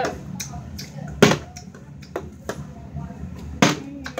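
Plastic water bottle being flipped and landing on the floor: two loud thuds about two and a half seconds apart, with a few lighter knocks between.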